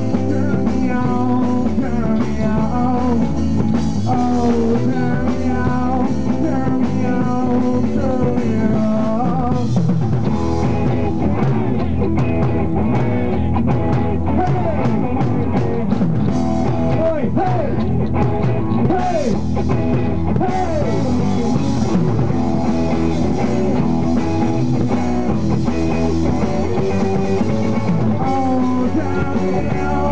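Live rock band playing: electric guitar over a drum kit, steady and loud, with pitch-bending lead notes near the middle.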